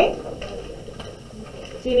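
Faint rustle and crackle of a sheet of folded paper being opened and handled, with a low hum of room noise; a woman's voice just at the start and again near the end.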